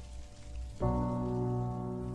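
Soundtrack audio: a steady hiss like falling rain, with a held chord of soft music coming in loudly about a second in and sustaining over it.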